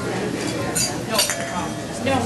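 Restaurant dining-room sound: a murmur of diners' conversation with cutlery and dishes clinking, two sharp clinks near the middle.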